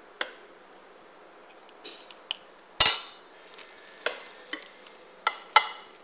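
Metal spoon clinking and scraping against a dish as thick béchamel sauce is spooned and spread, about nine separate clinks, some ringing briefly, the loudest just before the middle.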